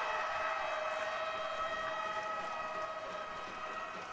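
Ice hockey arena goal horn sounding one long steady note after a goal, gradually getting quieter.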